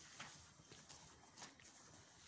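Near silence, with three faint clicks spread across the couple of seconds.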